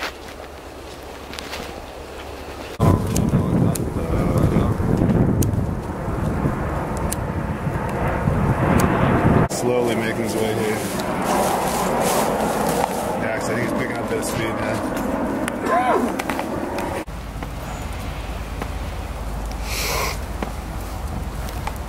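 Muffled, indistinct voices over heavy low rumble from wind and handling on the microphone, with the sound changing abruptly a few times.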